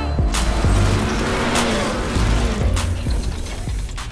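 Outro sound effects: a dense mechanical clicking and ratcheting noise over a low rumble, mixed with music.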